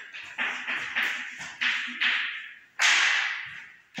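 Chalk writing on a blackboard: a series of short scratchy strokes, with a longer, louder stroke about three seconds in that fades out over most of a second.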